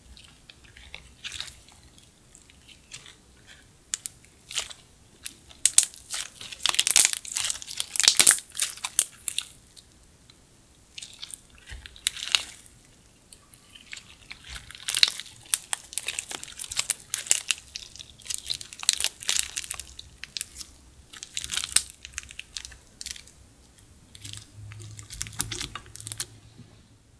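Slime being squeezed and worked by hand, giving clusters of sharp crackling clicks and pops, with quieter pauses between the bursts.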